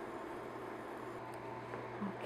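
Faint steady low hum and soft hiss of a portable induction burner running, with cherry syrup simmering in a small stainless saucepan.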